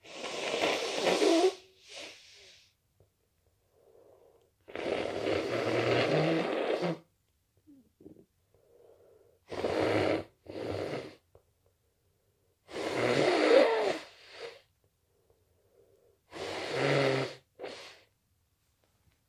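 A person with a head cold breathing loudly and raspily, like snoring: long noisy breaths every three to four seconds, with fainter breaths between them.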